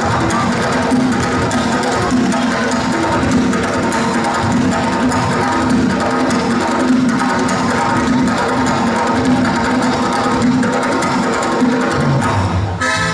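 Georgian folk dance music with steady, quick drumming.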